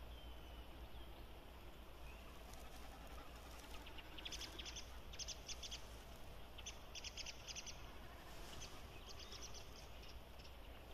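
A small bird calling in several short runs of rapid high notes from about four seconds in, over a faint steady low hum and hiss.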